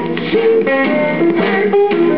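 Instrumental passage of a 1950s pop record, the band playing a moving melody with no singing.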